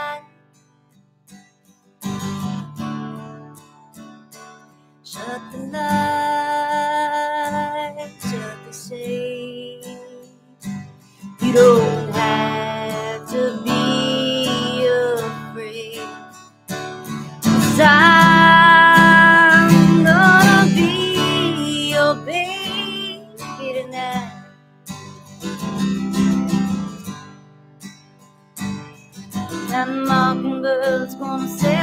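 Acoustic guitar strummed while a woman sings long, held notes. There is a near-silent break of about two seconds at the start.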